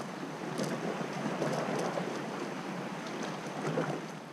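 Steady rushing of wind on the microphone mixed with sea surf washing over shoreline rocks, with a few faint clicks.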